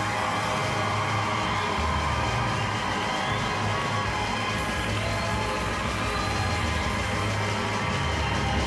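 Gospel choir and orchestra sounding together, with an audience cheering and whooping over the music.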